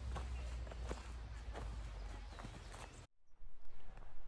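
Footsteps on a dirt forest trail: irregular crunching steps over a low steady rumble. The sound cuts off abruptly about three seconds in.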